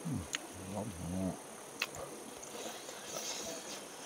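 Insects buzzing in the forest, a steady high drone that swells for about a second past the middle. Near the start a man's low voice sounds twice, briefly, and a few sharp clicks come through.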